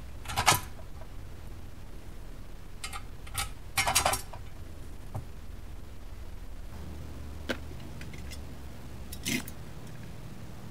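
Scattered clinks and knocks of small metal bolts and a metal mounting bracket being handled and set against an engine computer's case. There are about half a dozen short hits, the loudest cluster about four seconds in, over a steady low hum.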